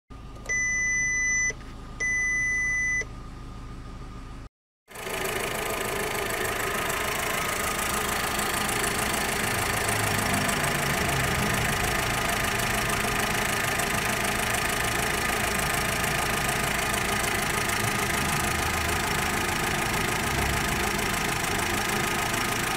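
Volkswagen Suran's instrument cluster giving two warning beeps, about a second each, as the low oil pressure warning comes on, over the engine idling. Then the engine idles steadily, heard close up from the engine bay, with its oil pressure very low at idle.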